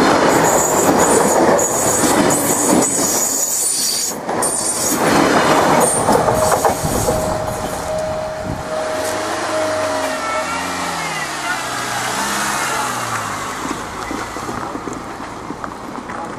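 Train rolling past close by, its wheels clacking over rail joints and squealing high on the rails. The noise eases off as it moves away.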